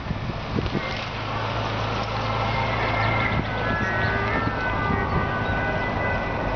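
Motorcycle and car engines of a race convoy running as it passes: a steady low engine hum under road noise.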